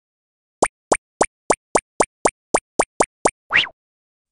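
Cartoon sound effects: eleven short pops, each sliding quickly up in pitch, at about three a second, then one slightly longer sliding sound near the end.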